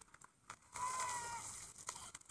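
Pond ice cracking and giving way as two people break through into the water, a sudden rush of breaking ice and splashing with a brief high-pitched cry over it.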